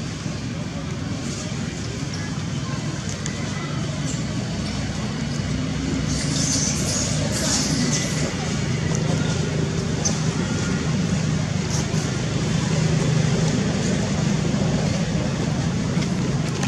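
Outdoor background noise: a steady low rumble like road traffic with indistinct voices mixed in, slowly growing louder.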